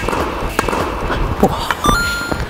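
Tennis rally on an indoor court: a racket strikes the ball right at the start, then several more sharp knocks of shots and bounces follow, echoing in the hall. A short ringing tone sounds near the end.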